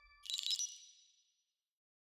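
Logo sting sound effect: a bright, high-pitched ding about a quarter second in, ringing out over about a second, over the fading tail of an earlier hit.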